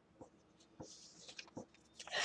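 Near silence with a few faint clicks and soft scratchy rustles.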